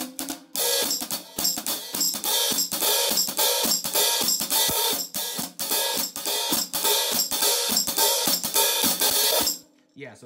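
Hi-hat cymbals played with a drumstick in a fast, steady groove. Light separate ticks come first; from about half a second in there is a loud, continuous ringing wash under the strokes, which cuts off sharply near the end.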